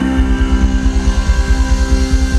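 Live ramwong dance band playing: a held chord over fast, even low drum pulses.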